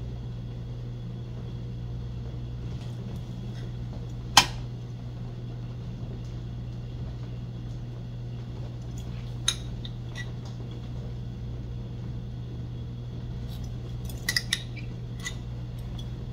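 A few sharp clinks of a small metal spoon against the pastries and baking tray as jam is spooned in: one loud clink about four seconds in, another near ten seconds, and several small ones near the end, over a steady low hum.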